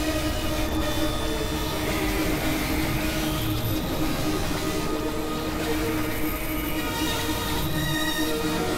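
A dense layered mix of experimental electronic music and noise: several overlapping steady tones and drones over a constant rumbling hiss, with no clear beat.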